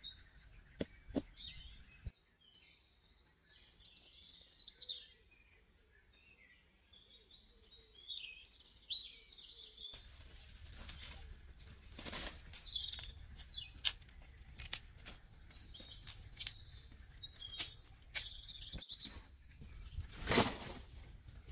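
Small birds chirping and twittering throughout, over a few sharp knocks in the first two seconds as a stone pounds a wooden stake into the ground. In the second half, scattered sharper knocks and clicks of handling sticks sound among the bird calls.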